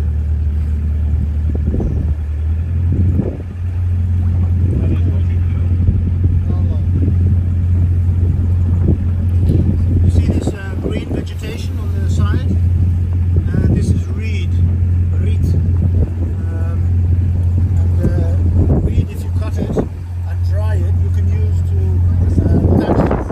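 Motorboat engine running steadily with a low drone, with indistinct voices over it.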